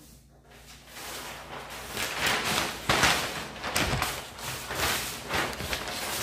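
A large sheet of paper rustling and crackling as it is picked up and spread out on the table, the crackle starting about a second in and coming in uneven bursts.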